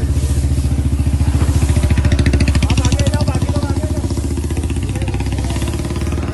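An engine running with a loud, rapid, even pulsing beat that holds steady.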